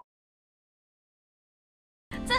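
Silence: the sound track drops out completely.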